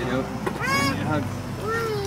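Two short, high-pitched squeaky vocal sounds about a second apart, each rising and falling in pitch, over a steady low hum.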